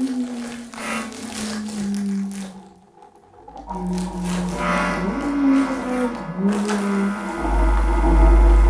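Free-improvised music for melodica and live electronics. Long, low held notes bend and slide in pitch over scattered crackly noise. The sound drops out briefly about three seconds in, and a deep electronic hum swells up near the end.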